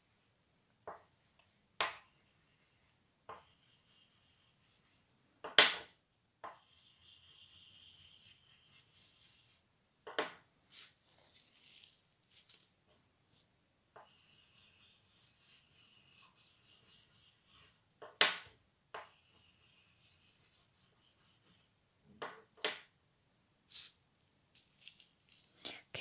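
Oil pastel rubbing and scratching across paper in stretches of short strokes. Scattered sharp clicks and knocks come from the pastel sticks being handled, the loudest a few seconds in.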